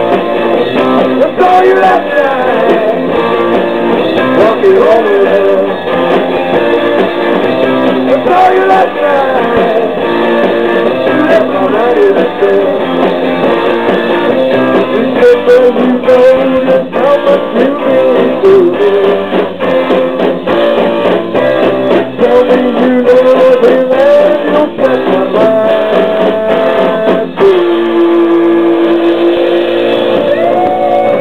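Rock band playing live in an instrumental break: an electric guitar lead with bending notes over a driving drum beat, settling on a long held note near the end.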